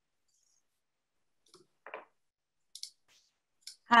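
A few faint, scattered clicks on an otherwise silent video-call line, about four of them in the second half. A woman's voice starts right at the end.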